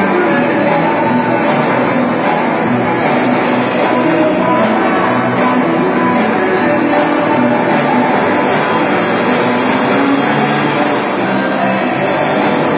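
Live rock band playing electric guitars and a drum kit, with a steady beat that runs on without a break.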